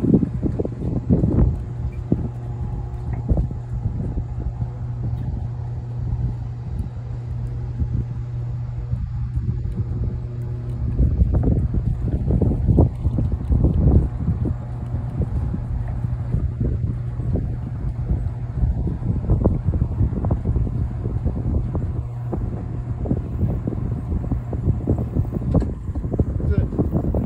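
Wind buffeting and rumbling on the phone's microphone, over a steady low hum.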